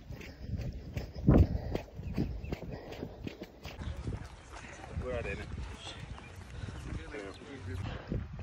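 Footsteps and handling thumps on a dirt course, picked up by a handheld camera: irregular thuds, the loudest about a second and a half in, with faint voices around five to six seconds in.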